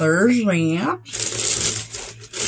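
A short vocal sound, then about a second in a brief rustle of a plastic bag being handled.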